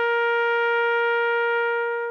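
A brass instrument holding one long note at a steady pitch.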